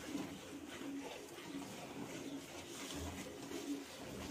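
A bird cooing over and over in low, short phrases.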